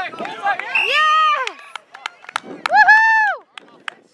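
Two long, held shouts from the sideline or field, high-pitched and wordless: one about a second in, one near the end. Scattered sharp clicks between them.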